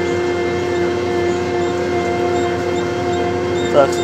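McCormick XTX diesel tractor running steadily under load while pulling a disc harrow, heard from inside the cab as an even drone with a clear steady tone.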